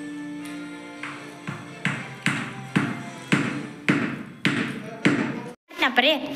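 A coconut used as a hammer repeatedly knocking the handle of a knife driven into a block of jaggery to break it up: about eight sharp blows, roughly two a second, starting about a second and a half in. Background music plays underneath.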